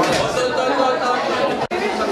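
A crowd of young people talking and calling out over one another in a room, with a momentary gap in the sound near the end.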